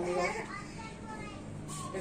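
A child's high-pitched voice in the background, in short stretches of unclear sound, over a low steady hum.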